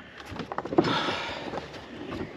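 A hand pump inflating a stand-up paddle board: a hiss of air about a second long, with a few small clicks.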